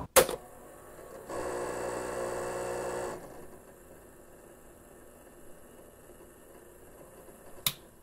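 A cassette recorder's piano-key button pressed with a sharp click, followed about a second later by a steady mechanical whir lasting about two seconds. Faint tape hiss follows, and a second sharp key click comes near the end.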